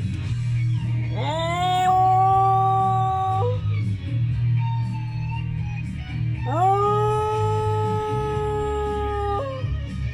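Jack Russell terrier howling along to guitar music: two long howls, each gliding up at the start and then held at a steady pitch for two to three seconds, the second starting about halfway through.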